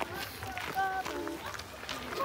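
Children's high-pitched voices talking in the background in short snatches, with footsteps on a leaf-strewn dirt trail.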